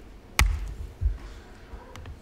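One sharp click from the computer's keyboard or pointing device, with a low thud behind it, confirming the save. A fainter knock follows about a second later.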